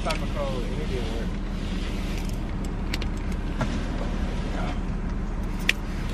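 Car engine idling from inside the cabin, a steady low hum, with a few small clicks and a faint voice in the first second.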